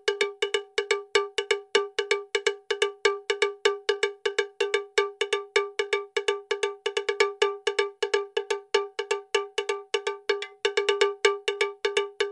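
Intro music of one bell-like percussion note, the same pitch throughout, struck rapidly and evenly at about five or six strikes a second.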